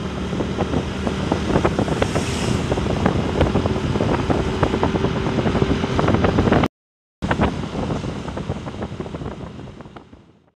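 Road and wind noise from a moving vehicle: wind buffets and crackles on the microphone over a steady low hum. The sound drops out for half a second about seven seconds in, then fades out near the end.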